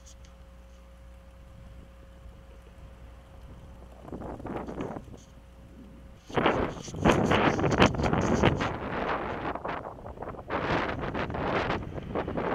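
Wind buffeting the microphone of a bicycle-mounted camera while riding, in loud, uneven gusts that start about six seconds in. Before that, a quiet stretch with a faint steady tone.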